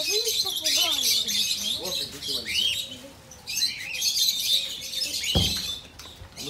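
Many small birds chirping and twittering at once, a dense high chatter that eases off briefly about three seconds in and then resumes.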